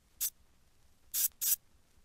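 Sampled cabasa hits, three short dry shakes: one about a quarter second in, then two close together just past a second.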